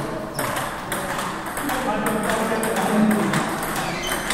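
Celluloid-type table tennis balls clicking irregularly off bats and table tops, several hits a second, over a hum of voices in the hall.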